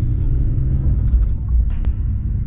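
Low, steady engine and road rumble inside the cabin of a moving BMW E46, with a single sharp click near the end.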